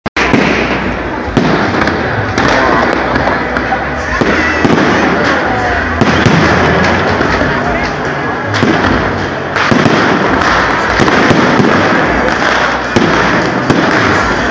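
Fireworks display: aerial shells bursting in sharp bangs every second or so over a continuous loud din of smaller explosions.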